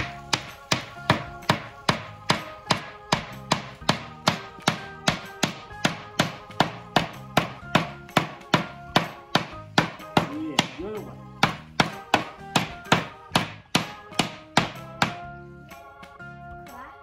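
A hammer driving a nail into the wood of a kids' birdhouse kit in a long, even run of blows, about two to three a second, that stops near the end. Background music plays under it.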